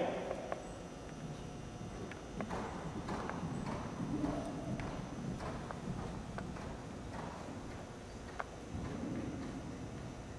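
Hoofbeats of a horse cantering on sand arena footing: a soft, uneven run of muffled thuds with occasional sharper clicks.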